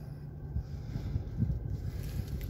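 Mazda CX-5's engine idling in neutral at about 1000 rpm just after a restart, heard from inside the cabin as a steady low hum; the car is partway through an automatic gearbox learning procedure.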